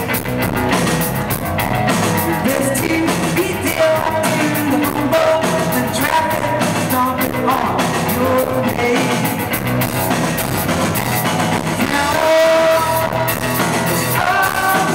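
Live rock band playing through a venue's PA, heard from the audience: a sung vocal melody over electric guitar, bass and drum kit.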